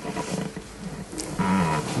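Short pause of room hiss, then in the last half second or so a man's voice holding a steady, low-pitched 'uhh' at one pitch, a hesitation sound before the next sentence.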